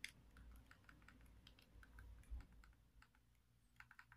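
Faint, irregular clicks of buttons being pressed on a Xiaomi Mi Box remote control while typing on an on-screen keyboard, over a low room hum.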